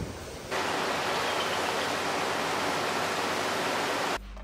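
A loud, steady rushing hiss with no pitch or rhythm to it. It starts abruptly about half a second in and cuts off suddenly at the end.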